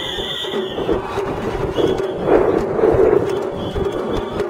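Festival float procession on the move: a high, held flute note from the float's festival music during the first second. About two seconds in, a louder, noisy surge lasts roughly a second.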